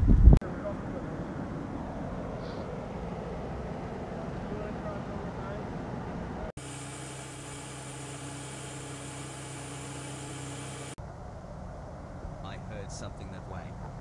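Simulated VHS tape static: a steady low hiss and rumble, then about six and a half seconds in a harsh burst of tape noise with a steady hum and whine cuts in for about four and a half seconds and cuts off sharply. A loud noise stops just after the start.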